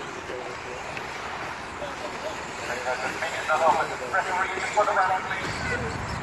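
Indistinct voices talking through the middle, over a steady background noise of radio-controlled racing cars running on the track.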